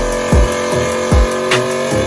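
Electronic music with a held synth chord and deep bass-drum hits.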